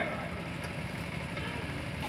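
A steady low rumble of background noise.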